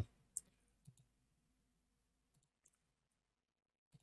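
Near silence with a few faint computer mouse clicks: two within the first second, then fainter ones later and one near the end.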